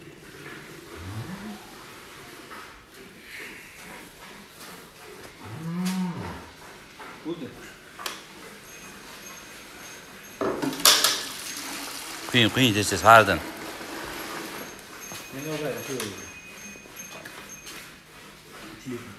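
Dairy cows mooing several times, the loudest moo coming about twelve to thirteen seconds in. There is a sharp knock just before it.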